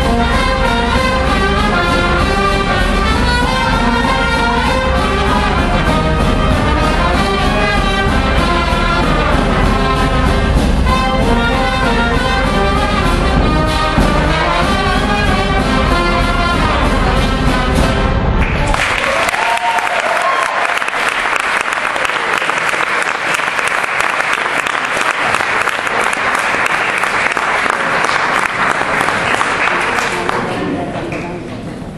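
A brass band playing Hungarian folk dance music for a couple dance; about two-thirds of the way through the music stops and the audience applauds steadily.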